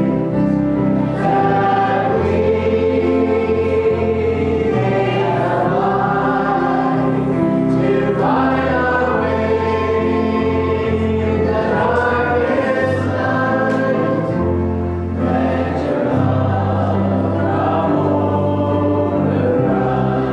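Congregation singing a hymn led by a small worship band, with keyboard and guitar accompaniment under sustained sung notes and a steady bass line.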